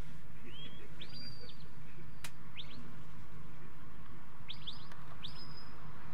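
A sheepdog handler's whistle commands to a working dog at the pen: a run of sharp, high, upward-sweeping whistles. Some snap up and hold a steady high note for a moment before cutting off, and others come as quick pairs and a triple about midway.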